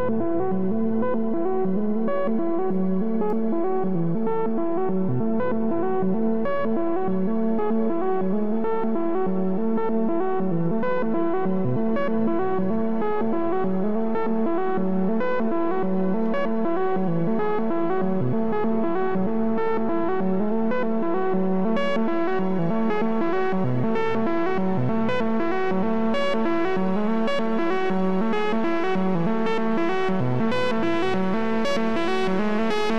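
Software modular synthesizer playing a repeating sequence of plucky notes from linked step sequencers, with one step taken out of the eight-step row so the patterns shift against each other. The tone grows brighter, with sharper note attacks, about two-thirds of the way through.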